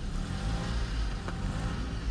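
A motor vehicle running, heard as a steady low rumble of engine and road noise with no distinct events.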